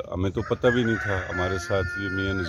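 A rooster crows once: a long call that starts about half a second in, rises, then holds its pitch, over a man talking.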